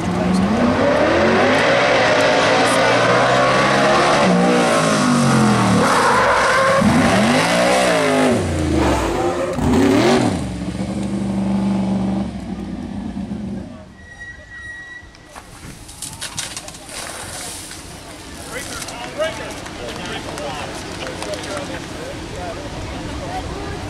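Engine of a motorized firemen's drill rig running hard, its pitch sweeping up and down repeatedly as it revs and eases off, for about the first thirteen seconds. Then it drops away, leaving a short steady tone and scattered clicks and knocks.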